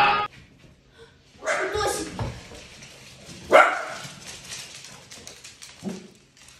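A dachshund barking twice, sharp barks about a second and a half and three and a half seconds in, with fainter ticking sounds afterwards.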